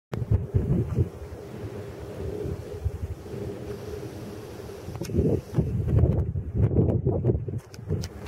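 Wind buffeting the camera's built-in microphone in gusts, a low irregular rumble, strongest from about five seconds in to near the end.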